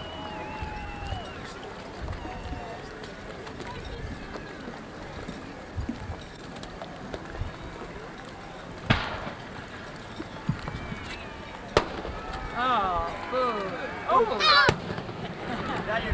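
Fireworks going off: a sharp bang with a short echo about nine seconds in, another about three seconds later, and a third near the end, over people talking.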